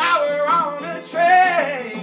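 A man belting a soul vocal line over a strummed acoustic guitar, holding a long high note from about a second in that slides down near the end.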